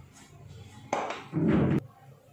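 Kitchen utensils knocking and scraping together, starting suddenly about a second in and cutting off abruptly just before the end.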